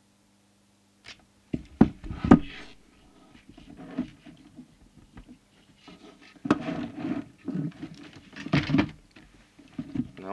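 Handling noise close to the microphone: cloth rustling and several sharp knocks as the camera is moved and reframed, after a faint steady hum that stops about a second and a half in.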